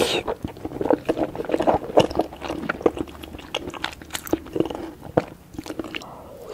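Close-miked eating sounds: wet chewing and lip smacking on spoonfuls of soft egg and noodles in spicy red broth, with many quick, irregular clicks throughout.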